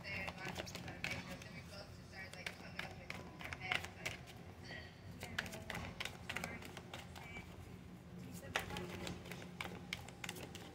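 A deck of round oracle cards shuffled by hand: a busy, irregular run of light card clicks and flutters.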